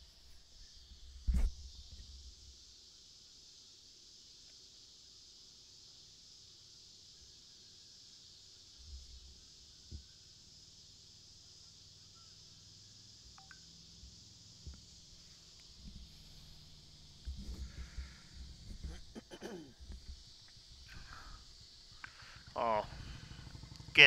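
Quiet evening outdoor ambience carried by a steady, high-pitched chorus of insects. There is one sharp knock about a second and a half in, and faint players' voices and low thumps in the last several seconds.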